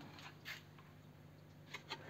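Near silence: room tone with two faint light clicks, about half a second in and near the end, from a clear plastic module being handled.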